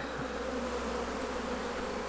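Steady hum of a mass of honeybees around an open hive.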